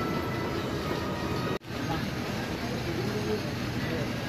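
Busy indoor market ambience: a steady din with faint, distant voices mixed in. The sound cuts out briefly about one and a half seconds in.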